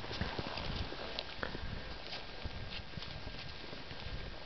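Ski-touring strides uphill in powder snow: irregular soft crunching of skis and pole plants with scattered light ticks, over a low rumble on the microphone.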